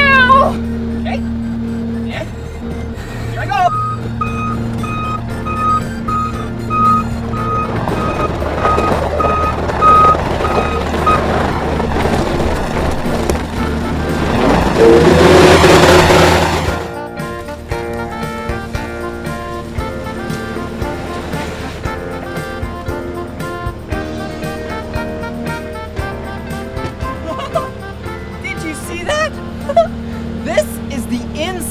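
Skid steer engine running, with an alarm beeping steadily for several seconds, then the engine rising to a loud rev that cuts off suddenly about halfway through. Background music follows.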